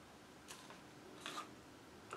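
Near silence with room tone, broken by a faint click about half a second in and a brief soft rustle and knock just over a second in, as a plastic paint cup is handled and set down.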